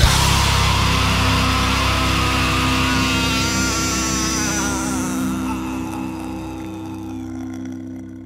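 Nu metal band's final distorted chord held and ringing out after the last hit of the song, slowly fading away toward the end.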